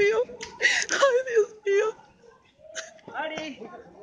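A woman whimpering in fright, short broken cries with a sharp breath about a second in and a brief lull midway.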